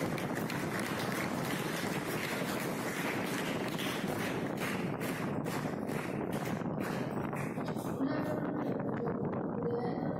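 A boy's voice reciting a poem, muffled and partly buried under a steady, loud hiss of microphone and room noise.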